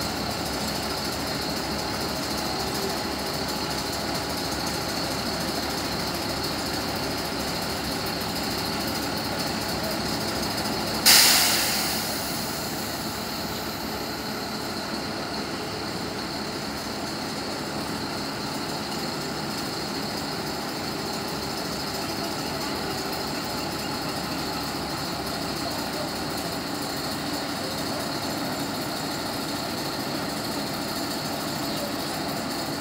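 A 140-ton railway crane's engine running steadily while its boom is raised. About eleven seconds in, a sudden loud burst of noise fades away over a second or so.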